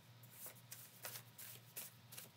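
A deck of tarot-style cards being shuffled by hand: faint, irregular card flicks and rustles, about half a dozen soft clicks.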